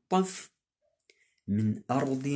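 A man's voice chanting a Quranic verse in Arabic, ending about half a second in; after a pause of about a second his voice starts again.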